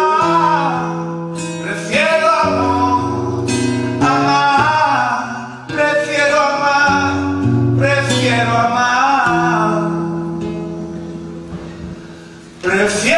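A man singing a slow, drawn-out ballad line while accompanying himself on a classical guitar, holding long chords that change every second or two. The phrases swell and then fade away about halfway through and again near the end.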